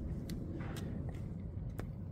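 Used engine oil draining in a thin, steady stream from a Suzuki Bandit 600's sump drain hole into a plastic drain pan, with a few light ticks.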